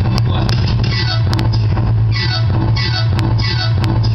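A DJ mix of 90s hip hop played loud, with a heavy sustained bass note under a sound that repeats about once a second, and a few sharp clicks.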